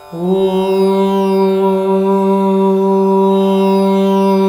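A man's voice starts a Vedic chant just after the start with one long, loud syllable held steadily on a single pitch, over a plucked tanpura drone.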